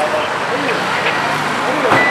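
Street background: a steady noise of road traffic with indistinct voices of people talking in the crowd.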